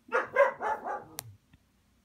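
A dog barking: four quick barks within about a second, with a sharp click near the end.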